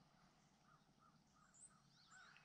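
Near silence with faint, distant bird calls: a run of short, evenly spaced calls starting about half a second in.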